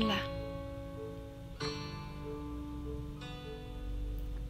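Background music of plucked-string chords ringing out, with a new chord struck about every second and a half.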